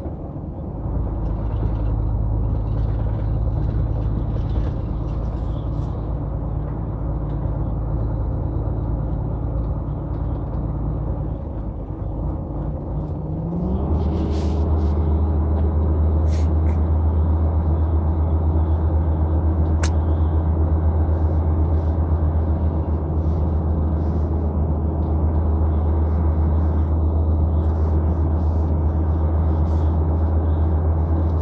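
Heavy truck's diesel engine running, heard from inside the cab while driving. The engine note dips briefly, then rises and holds louder and slightly higher from about 14 seconds in.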